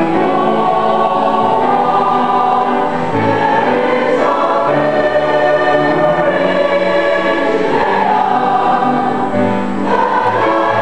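A large mixed choir of boys and girls singing held notes in several parts, the chords shifting every second or so.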